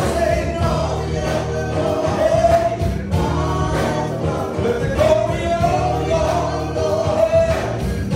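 Gospel song sung by a small vocal group of three, two women and a man, with a band; drums keep a steady beat under the voices.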